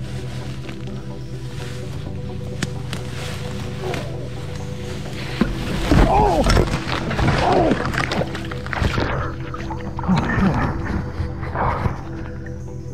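Background music throughout. From about five and a half seconds in, a man cries out and groans as he falls through tall stinging nettles onto a metal pipe and into a river.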